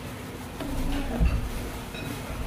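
Buzzing of a flying insect passing close, louder from about half a second in, over a steady low background hum.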